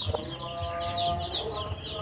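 A brood of four-day-old chicks peeping without a break, many short, falling chirps overlapping one another.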